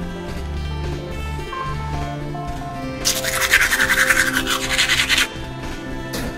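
Toothbrush scrubbing teeth in quick back-and-forth strokes for about two seconds, starting halfway through, over steady background music.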